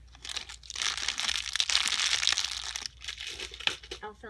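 Plastic candy wrappers and small cellophane candy bags crinkling and crackling as they are handled and sprinkled into a basket. The crinkling runs densely for about three seconds, with a short lull near the end.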